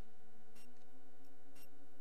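Ambient background music: sustained, droning tones held under a sharp tick that comes about once a second, like a clock.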